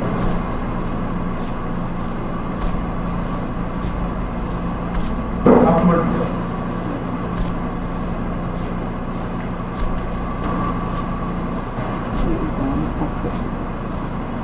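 A steady low electrical or mechanical hum with a faint higher whine over a constant background noise. A brief voice breaks in about five and a half seconds in.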